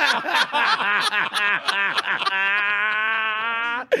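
Hearty laughter: a man laughing hard in a fast run of laughs, then a long held vocal note at a steady pitch that cuts off suddenly just before the end.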